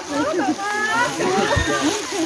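Several people talking over one another in loose, overlapping chatter, with a short low thump about a second and a half in.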